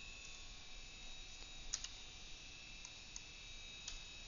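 A few faint, sparse clicks from a computer keyboard and mouse as a value is typed into a software field, over a low steady electrical hum with a faint high whine.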